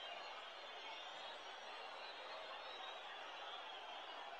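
Dead air: only a faint steady hiss with no voice, because the remote commentator's connection has dropped out of the live radio broadcast.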